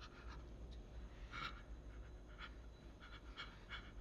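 A person breathing in several short, irregular, breathy gasps, quiet and close, the strongest about one and a half seconds in, like stifled sobbing.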